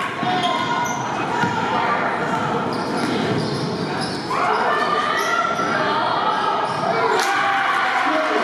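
Basketball being dribbled on a hardwood gym floor during play, with indistinct shouting from players and spectators that grows louder about halfway through.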